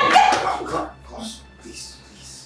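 Loud wordless cries and yelps in a physical struggle as one person grabs and holds another. The cries are loudest in the first second, then fade into quieter short scuffling sounds.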